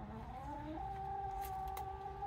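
A chicken giving one long, drawn-out call that climbs in steps over the first second, then holds a steady pitch.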